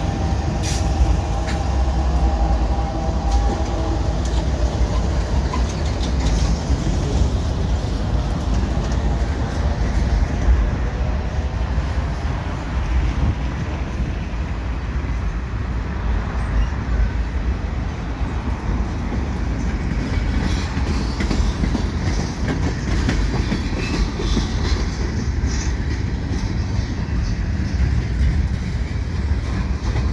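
Freight train passing close by: the last of three CN GE ES44AC diesel locomotives runs past with an engine hum that fades in the first few seconds. Then loaded freight cars roll by with a steady heavy rumble and the clickety-clack of steel wheels over the rail.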